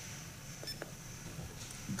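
A single short, high beep from the Phocus3 smart recorder's keypad as a key is pressed, with a faint click, over low room noise.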